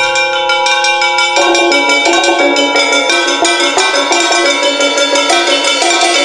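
Percussion quartet playing a fast passage of struck, pitched notes, many strikes a second. Some ringing tones are held through about the first second and a half before the rapid notes fill in.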